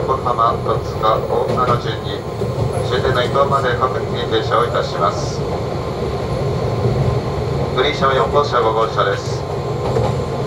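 Inside the passenger car of a JR East 185 series electric train on the move: a steady low running rumble, heard under a voice on the onboard public-address system.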